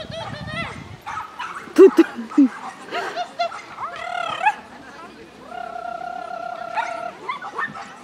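A dog barking and yipping in short, high, arching yelps at intervals, with a few very loud sharp sounds about two seconds in and a long steady high tone for over a second near the end.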